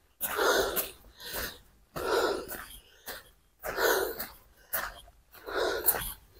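A hiker breathing hard, a deep breath about once a second, from the exertion of climbing a steep uphill trail.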